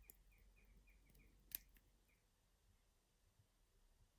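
Near silence with faint, rapid ticking for about the first second and one sharp click about one and a half seconds in: the pulled-out crown of an Eterna Kontiki Four Hands watch being turned to set the hands.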